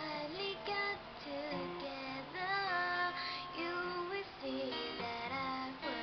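A woman singing a song with long held notes while accompanying herself on a plucked acoustic guitar.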